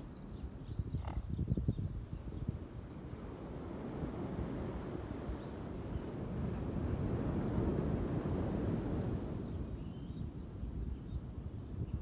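Beach ambience of wind and surf: a low, rushing noise that swells in the middle and eases near the end, with a single light tap about a second in.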